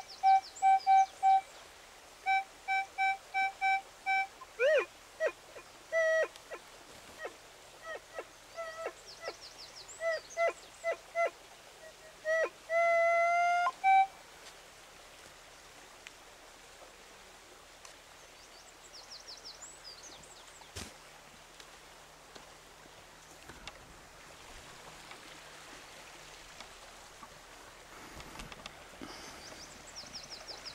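Metal detector sounding on a buried coin. It gives short repeated beeps at one pitch, then tones that slide and shift in pitch as the coil passes over the target, ending in a long rising tone about fourteen seconds in. After that there is faint outdoor ambience with a few bird chirps.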